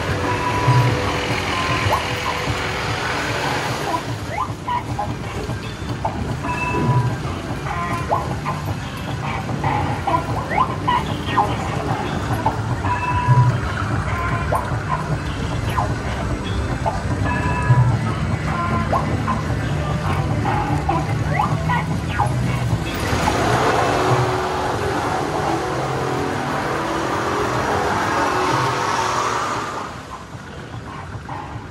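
Music playing over the steady running noise of a small amusement-ride truck moving along its track, with short tones and low thumps every few seconds. A louder rushing noise builds over the last several seconds.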